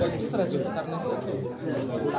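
Chatter of several people talking at once, spectators' voices near the microphone.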